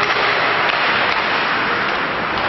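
Ice hockey rink during play: a steady, loud noisy din with a few faint sharp clicks.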